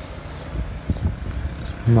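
Low, steady rumble of a vehicle driving along a road, with a few faint knocks about a second in.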